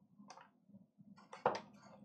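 Plastic knife spreading peanut butter onto a soft chocolate cake in its opened wrapper: a few soft scrapes and crinkles, the loudest about one and a half seconds in.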